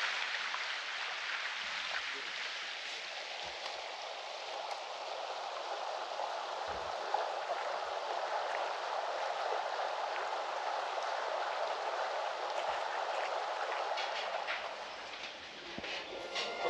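Steady rushing of flowing water from a stream or river, an even continuous noise that eases off near the end.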